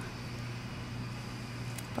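Steady low background hum with a faint hiss, unchanging throughout, with no distinct event.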